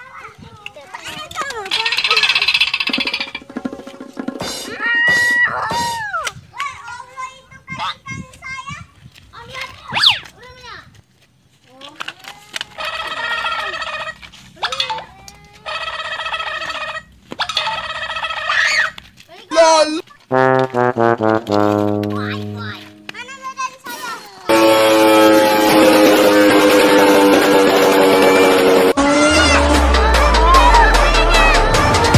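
Edited-in soundtrack: children's voices and cartoon-style sound effects, including a tone that falls step by step about 20 seconds in, followed from about 24 seconds by loud music.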